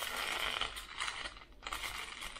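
Aluminium foil crinkling unevenly as it is rolled up by hand around a filling.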